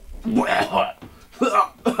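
A person gagging and coughing in disgust: about three short, throaty retching outbursts.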